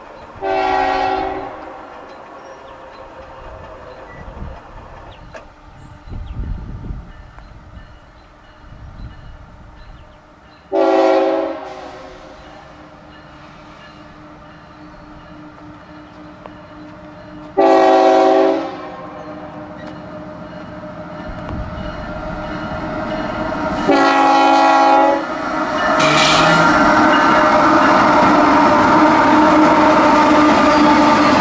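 CSX freight locomotive's multi-note air horn sounding four separate blasts, each about a second long and several seconds apart, for a grade crossing as the train approaches slowly under a slow order. Near the end the locomotive's diesel engine and the rumble of the train on the rails grow loud as it reaches the crossing.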